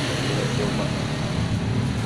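A small motorcycle engine running on the street, a steady low hum.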